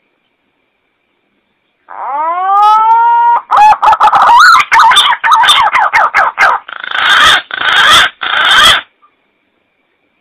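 Green pigeon (punai) call played loud as a hunting lure: one rising whistled note, then a run of quick wavering notes, ending in three harsh, hoarse notes.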